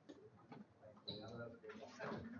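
Faint murmur of people talking quietly in a room, with light ticking sounds and a short high-pitched squeak about a second in. The voices grow louder toward the end.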